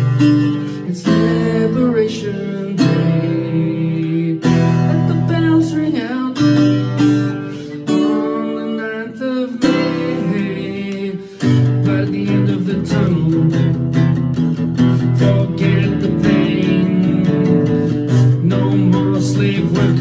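Acoustic guitar strummed in a live song, with a voice holding long sung notes over it through the first half; from about eleven seconds in, the strumming becomes busier and fuller.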